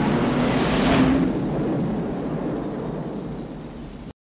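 A large film explosion of a hangar going up in a fireball: a heavy blast that peaks about a second in and then slowly dies away, cutting off abruptly at the very end.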